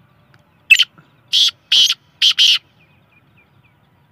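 Young black francolin calling: five harsh, rasping notes. A short single note comes under a second in, then four more follow quickly in two pairs.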